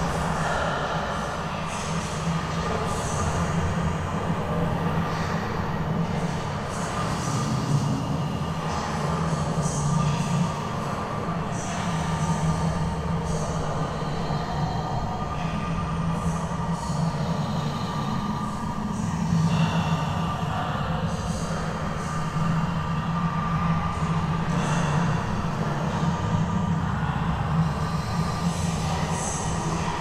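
A steady, dense low rumbling drone with short higher noises coming and going throughout: a dark horror ambience.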